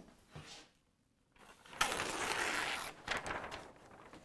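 A sheet of self-stick Post-it easel-pad paper being torn off the pad: one paper rip of about a second, past the middle, followed by a few short crackles of the loose sheet being handled.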